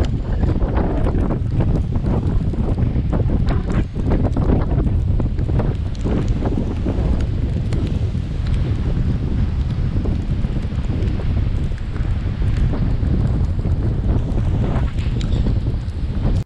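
Strong gusty wind buffeting an outdoor camera microphone, a loud, steady low rumble, with heavy sea surf breaking on a rocky shore underneath.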